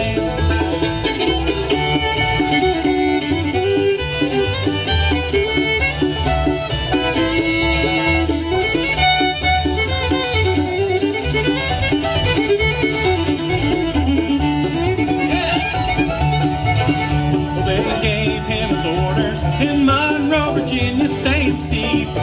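Bluegrass band playing an instrumental break: the fiddle takes the lead over banjo, acoustic guitar and bass keeping a steady beat.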